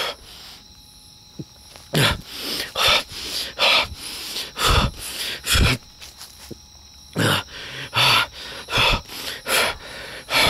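Dogs barking over and over, about one bark a second from about two seconds in, without stopping.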